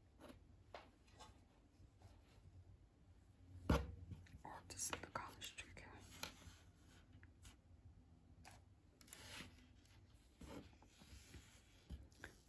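Faint handling of a crocheted chain strip and loose yarn on a wooden tabletop: soft rustles and scattered small clicks, with one sharper knock a little under four seconds in.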